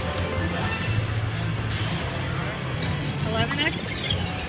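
Video slot machine bonus-round music and electronic sound effects, with a rising sweep about two seconds in and another sweeping effect near the end, while the bonus win is tallied on the meter.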